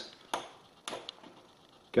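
Two sharp clicks about half a second apart, each with a short ring, as a 3.5 mm setup microphone is plugged into the front jack of a Denon AVR-591 AV receiver and the receiver switches into Audyssey calibration mode.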